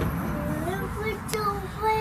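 A young child's voice in soft, wordless sing-song, the pitch sliding up and down, with a couple of short held notes toward the end.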